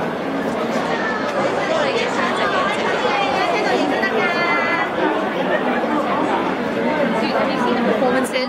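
Crowd chatter: many people talking at once close around, their voices overlapping into a steady babble. One nearer voice stands out about three to four seconds in.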